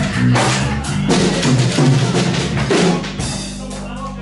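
Live rock band playing an instrumental passage, the drum kit loudest with bass-drum and snare hits over held bass guitar notes and electric guitar.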